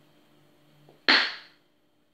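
A glue squeeze bottle sputters once about a second in: a single short, sharp spurt of air and glue forced out of its nozzle by a hard squeeze.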